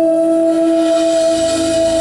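Two women singing a duet, holding one long steady note, with the band's accompaniment underneath.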